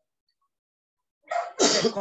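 Silence, then a bit over a second in, a person gives a short lead-in breath and a loud, harsh cough that carries on past the end.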